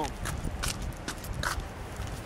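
Footsteps on wet pavement: a few sharp, uneven taps from a walking basset hound and its walker.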